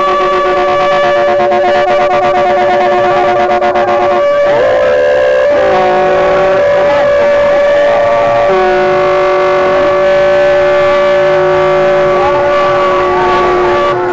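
Several loud sustained musical tones held at steady pitches and overlapping, some dropping out and starting again. A fast, even rattle runs under them in the first four seconds.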